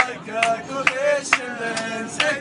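A song: a man singing over a steady beat of about two strikes a second.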